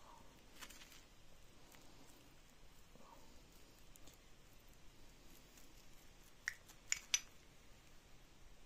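Quiet handling of a small two-part metal mold, then three sharp metallic clinks in quick succession near the end as the mold halves are separated.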